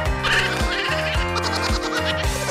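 Background music with a steady beat about twice a second, with a wavering, warbling sound laid over it twice.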